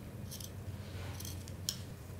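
Scissors trimming printed fabric around a piece of pinned batting: a few short, quiet snips.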